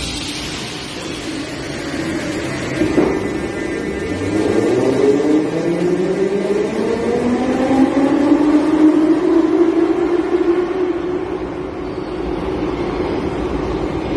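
81-718/719 metro train with thyristor-pulse (TISU) traction control pulling out and accelerating. From about four seconds in, its traction whine rises in pitch in several tones at once, then levels off, over the rumble of the wheels on the rails. A single knock comes about three seconds in.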